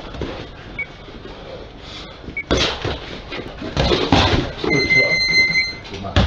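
Boxing gloves thudding on gloves and body during a heavyweight sparring session, in bursts of blows about two and a half and four seconds in. A steady high electronic beep sounds for about a second near the end.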